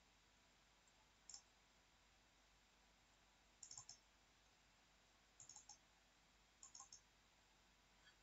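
Faint computer mouse clicks in four short groups, a single click first and then quick runs of two to four, over near silence.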